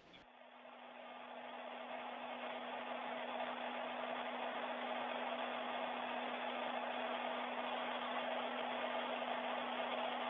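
Steady rushing air noise with a low steady hum, fading up over the first couple of seconds: the fan and ventilation noise of the space station's cabin, heard through a narrow-band audio feed.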